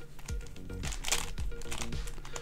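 Plastic layers of a non-magnetic Sengso 5-layer Magic Tower pyramid puzzle clicking in a quick series of turns as it is scrambled by hand, with soft background music.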